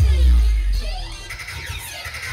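Loud bass-heavy dance music from an outdoor DJ sound system, with a deep bass boom at the start that drops away about half a second in.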